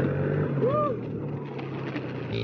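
Dirt bike engine running under a rider on a rough track, its note holding fairly steady. A brief rising-and-falling tone cuts through about two-thirds of a second in.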